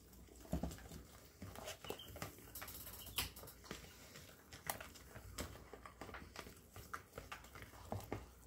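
Fork stirring thin pancake batter in a plastic bowl, with irregular small clicks and taps as the fork knocks and scrapes against the bowl.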